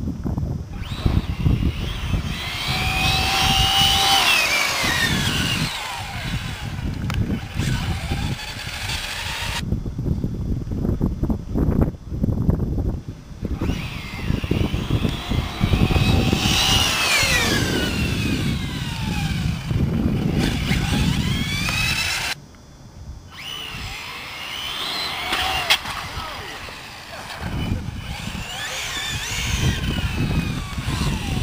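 Radio-controlled cars racing on asphalt, their small motors whining up and down in pitch as they speed up and slow down in repeated passes, over low wind rumble on the microphone.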